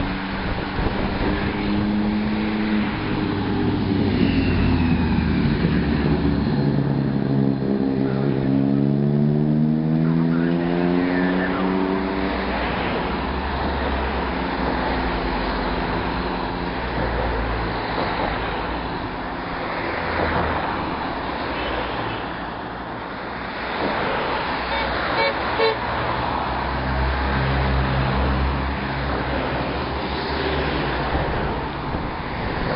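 Cars and motorbikes of a bike race's following convoy driving slowly past, engines running steadily over road noise. Between about five and twelve seconds in, one engine note climbs in pitch as a vehicle speeds up.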